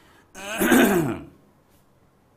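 A man clearing his throat once, a rasping vocal sound with a falling pitch lasting about a second.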